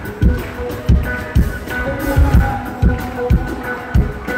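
Live band playing with electric bass, electric guitar and acoustic guitar, over a steady low beat about twice a second.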